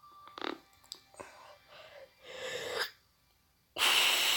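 A person breathing softly, then a sharp in-breath, a brief hold, and a sudden loud blast of breath into his fist near the end.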